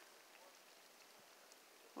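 Near silence: a faint, steady outdoor hiss.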